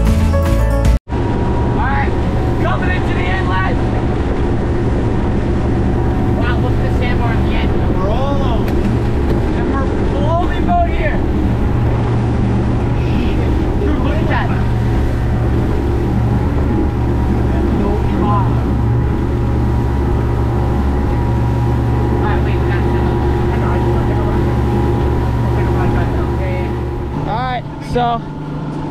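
Outboard-powered fishing boat running at speed through rough water: a steady engine drone under wind and water noise, with indistinct voices calling over it.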